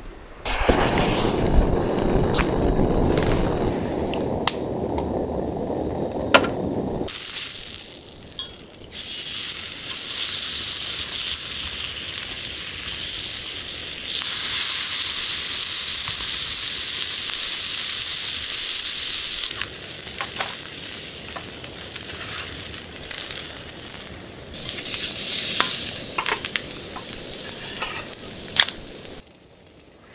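Chicken pieces frying in oil on a thick iron griddle plate over a portable gas burner, a steady sizzle that grows louder about halfway through. For the first several seconds a lower rushing noise dominates, with a few light clicks.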